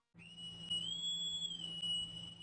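A high whistle-like tone, a title-card sound effect, held steady over a low hum. It rises slightly in pitch about a second in and glides back down near the end.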